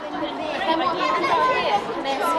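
Many children's voices chattering at once, talking over one another so that no single voice stands out.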